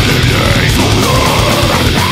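Death metal recording: heavily distorted electric guitars over fast, pounding drums, dense and loud throughout.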